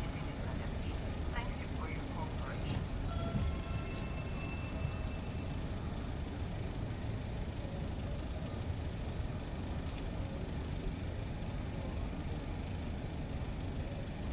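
Steady low engine rumble with faint voices in the distance.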